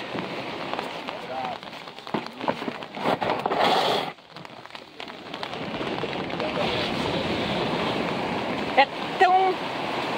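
Steady rain hiss with people's voices talking now and then in the background; the hiss drops briefly about four seconds in.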